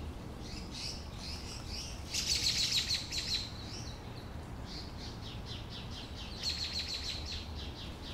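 House sparrows chirping over and over, with two louder bursts of fast chatter, about two seconds in and again later on.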